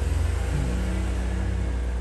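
A steady low rumble with a faint hum above it, a second hum tone joining about half a second in.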